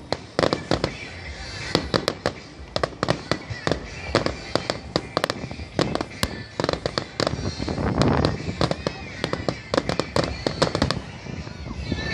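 Aerial fireworks bursting in quick succession: a dense run of sharp cracks and bangs, several a second, heaviest around eight seconds in.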